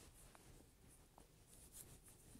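Near silence: quiet room tone with a few faint, brief ticks.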